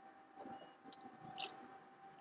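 Almost silent, with a few faint clicks from a 3D-printed plastic gear model being handled and turned by hand.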